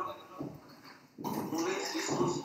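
A man speaking through a video-call connection, in short phrases with a quieter pause in the middle.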